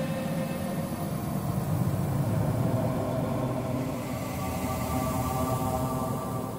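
Steady low droning rumble with several held tones sounding above it, the tones growing stronger in the second half.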